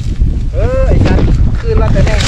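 Strong wind buffeting the microphone, a loud, steady low rumble. A voice calls out briefly about half a second in, and again faintly near the end.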